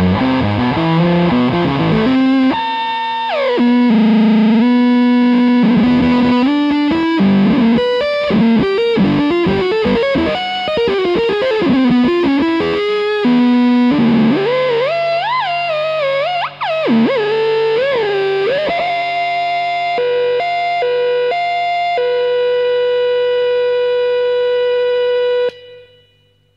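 Electric guitar played through a Redwitch Fuzzgod II fuzz pedal, distorted notes and riffs. There are string bends in the middle, and it ends on a held note that cuts off sharply near the end.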